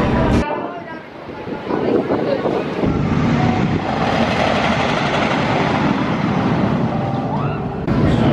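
Wooden roller coaster train (GCI) running along its wooden track: a steady rumbling rush of wheels on track that builds about two seconds in and carries on until just before the end.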